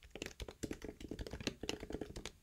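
Typing on a computer keyboard: a quick, uneven run of fairly quiet key clicks.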